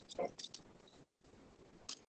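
Faint clicks and a brief soft voice sound over a quiet line, with the audio dropping out completely for a moment near the middle.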